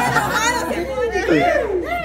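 Lively chatter of a group of young people, several voices calling out over one another in a teasing, excited way.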